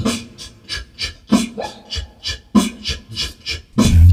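Beatboxing: a quick, steady rhythm of sharp vocal hi-hat and snare clicks, with a couple of short low bass notes.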